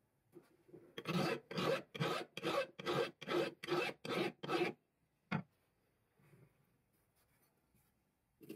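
A flat block rubbed by hand across the face of an old steel file: about nine rasping strokes, a little over two a second, then stopping. A single sharp click follows shortly after.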